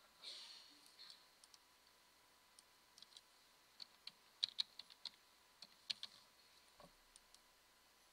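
Faint computer keyboard typing: single keystrokes and short irregular runs of taps as login details are entered.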